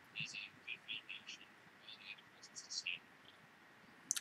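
Faint, whispery voice fragments: short hissing bursts of consonant-like sound with no voiced tone behind them, coming and going several times a second over a quiet call line.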